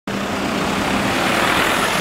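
A small cab-over flatbed truck driving past close by, its engine hum under steady road noise that swells slightly as it goes by.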